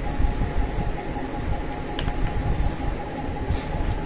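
Steady low rumble of room background noise with a faint constant hum, of the kind a fan or air conditioner makes, and a light click about two seconds in.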